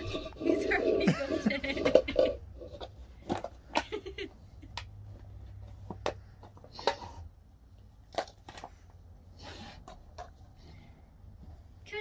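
A person laughs for about the first two seconds, then comes a scattered series of light sharp clicks and knocks as a husky paws and noses at lightweight plastic cups on a carpet.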